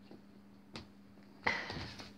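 A pop-up fabric cat play cube being knocked during play: a faint click, then about a second and a half in a sudden thump followed by half a second of fabric rustling.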